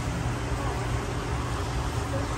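Steady low hum with an even hiss over it, the running equipment of a room full of aquarium tanks.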